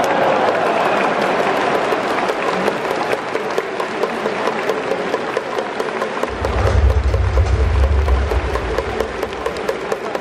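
Baseball stadium crowd applauding a successful sacrifice bunt, a dense, steady patter of many hands clapping. A low rumble joins in from about six to nine seconds in.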